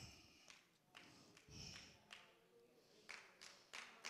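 Near silence: room tone with a few faint taps, as of things being handled on a pulpit desk.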